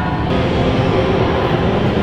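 Loud, steady rumbling noise with a faint low hum and no clear beats or breaks.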